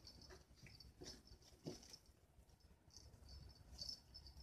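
Near silence: faint high-pitched chirping repeats steadily throughout, with a couple of soft rustles as a cat paws at a toy on a doormat.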